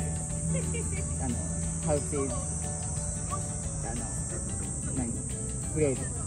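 Steady high-pitched chorus of insects, with a low steady hum underneath and a few faint, distant words of speech.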